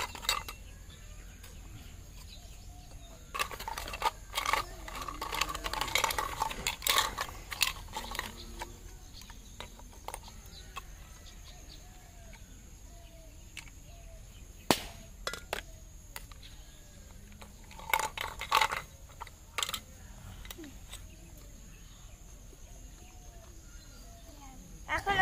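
Miniature toy kitchen pots and utensils clinking and clattering as they are handled, in scattered bursts: a run of clatter a few seconds in, a single sharp clink in the middle and a few more near the end.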